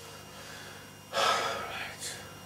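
A person's sharp, audible breath about a second in, lasting under a second, with a shorter breath at the very end, over quiet room tone after the guitar has stopped.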